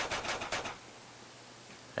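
A cloth rag scrubbing a shotgun's metal receiver in several quick back-and-forth strokes, working stripper cleaner in to lift surface rust. The strokes stop within the first second.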